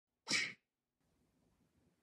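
A single short, breathy burst from a person's voice, about a third of a second long, just after the start.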